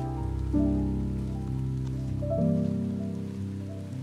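Closing background music: slow, sustained keyboard chords that change twice and grow steadily quieter as the track fades out.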